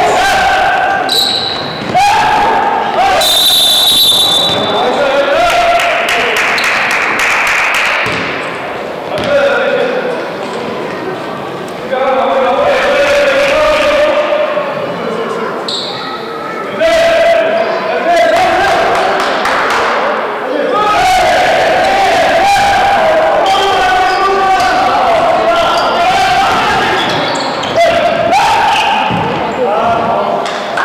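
Live basketball in an echoing gymnasium: the ball bouncing on the hardwood court, with a few short high squeaks and players' voices calling out.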